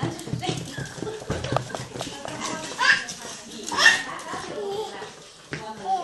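A baby vocalizing while playing, with two short, loud rising cries about three and four seconds in, amid light knocks and scuffles.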